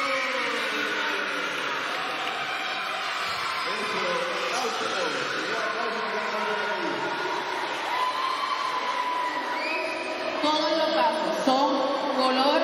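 Many children's voices chattering and calling out at once, overlapping, with no single clear speaker; the voices get louder near the end.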